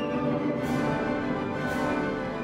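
Symphony orchestra playing, strings and clarinets holding sustained chords, with a soft high accent about once a second.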